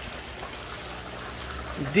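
Steady trickle of running water from an aquaponics system, with a faint low hum under it.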